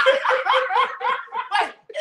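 Men laughing hard together: a loud, rapid string of ha-ha syllables, about five a second, that breaks off briefly near the end.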